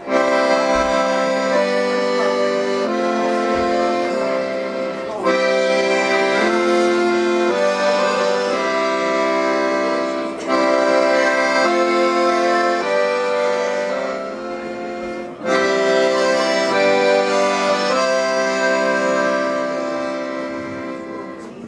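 Accordion playing an instrumental break: sustained chords that change about every second, with brief breaks about every five seconds.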